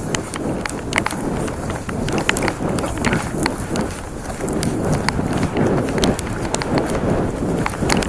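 Hurried footsteps through tall dry grass and weeds, with the stems swishing and crackling against the legs in an uneven stream of rustles and snaps.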